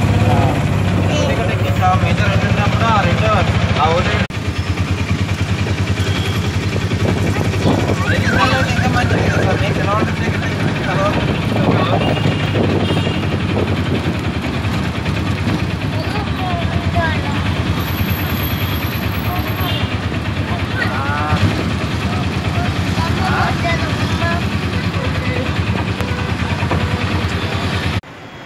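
Auto-rickshaw engine running steadily as it drives, heard from inside the passenger seat, with voices talking over it.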